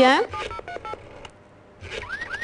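A short run of electronic beeps, each a steady tone at a different pitch, in quick succession like telephone keypad dialing tones, lasting about a second.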